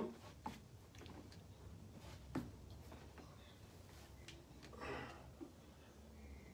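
Swivel office chair turning with a person on it, nearly quiet: a few faint clicks and knocks, the clearest about two seconds in, and a soft rustle about five seconds in.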